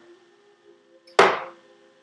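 A glass set down on a hard surface with a single sharp knock about a second in, over faint steady background tones.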